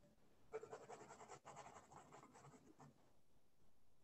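Faint scratching of writing on paper, a dense run of small strokes lasting about two and a half seconds from about half a second in.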